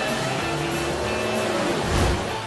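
Race car engine running at speed over music, ending in a low, loud rush as a car passes close.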